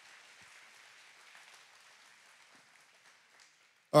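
Faint applause from a congregation, dying away over about three seconds.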